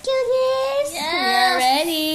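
A woman singing long drawn-out notes, with a second, lower voice joining in about a second in.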